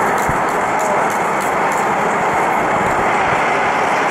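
Steady din of a football stadium crowd, thousands of spectators' voices blended into one continuous noise.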